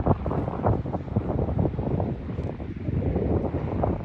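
Wind buffeting the microphone: an uneven, gusty rumble with crackles.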